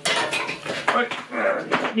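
Metal hand tools clattering and clinking in several sharp knocks, among them a pair of hose clamp pliers slipping from the hand.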